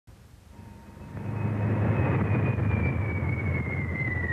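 Lockheed C-130 Hercules' four turboprop engines running, fading in over the first second and a half to a steady low rumble. A high whine over it slowly falls in pitch.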